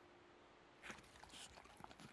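Near silence: a faint held music note fades out about a second in, followed by a few faint soft rustles and small clicks.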